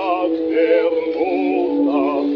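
Male operatic baritone singing a Russian aria with strong vibrato, over held accompanying notes, in an early acoustic recording with a narrow, thin sound.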